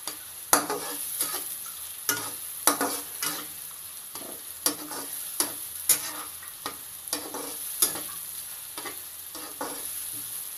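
Chopped onions sizzling in butter and oil in a nonstick pan, with a steady hiss. A spatula scrapes and knocks against the pan at irregular moments as the onions are stirred.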